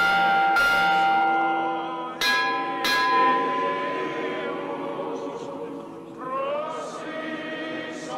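Church bell tolling for the Good Friday Epitaphios procession: a strike at the start and two more close together about two seconds in, each left ringing on. Chanting voices sing beneath the bell and come forward near the end.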